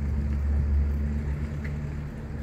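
A motor vehicle engine running nearby: a low, steady rumble that swells slightly about a second in.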